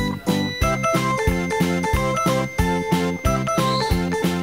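Background music: a light tune of short pitched notes on a steady beat, about three notes a second.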